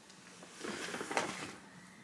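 Rustling and crackling of a shopping bag being rummaged through, a brief burst of about a second.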